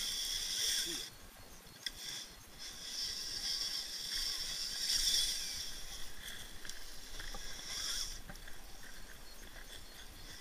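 Electric drive of a radio-controlled rock crawler whining in high-pitched stretches as the throttle is applied on a rock climb: about a second at the start, a longer run from about two and a half to five and a half seconds, and a short burst near eight seconds.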